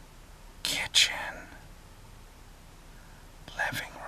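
A man whispering close to a phone held at his ear: two short whispered phrases, the first about a second in and the second near the end.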